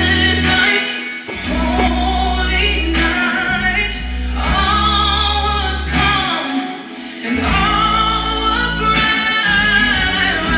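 Gospel worship music: a choir and singers holding chords over a sustained bass, the music dipping briefly about a second in and again around the seventh second.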